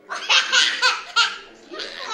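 Laughter: a quick run of loud bursts through the first second and a half, then a softer one near the end.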